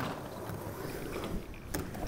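Skateboard wheels rolling over smooth concrete: a steady rumble, opening with a sharp knock and with a couple of faint clicks near the end.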